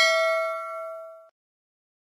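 Notification-bell sound effect: a single bell ding that rings out and fades away over about a second.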